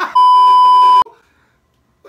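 Censor bleep: a single loud, steady beep of just under a second that masks spoken words and cuts off suddenly.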